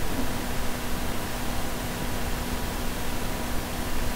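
Steady background hiss with a faint, steady low hum that starts just after the beginning and holds one pitch throughout.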